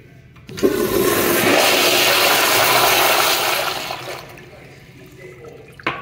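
Commercial toilet flushed with a manual flushometer valve: a sudden loud rush of water starts just under a second in, runs for about three seconds, then fades to a quieter refill flow. A brief knock near the end.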